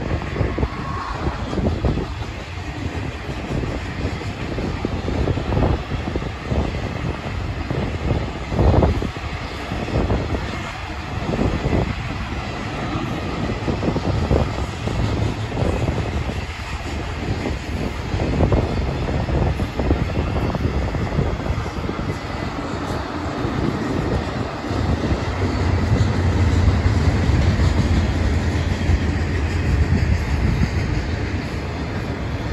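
Freight train's double-stack container cars rolling past: a steady rumble of steel wheels on the rails, with occasional sharper knocks. A low drone grows louder over the last few seconds.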